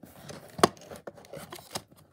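A small cardboard box being handled and its tucked lid pulled open, with a sharp click about half a second in and light scraping and rustling of card.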